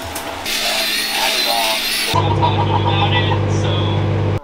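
Electric shower spraying water, a steady hiss. About halfway through, this gives way abruptly to a Morphy Richards microwave oven running with a steady electrical hum.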